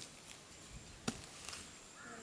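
Sharp chopping strokes, about one a second, as a blade cuts into the base of a giant taro (man kochu) plant.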